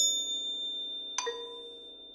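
Struck metal percussion ringing with a thin, high, long-held tone. About a second in, a second, lower struck note sounds and dies away within about half a second.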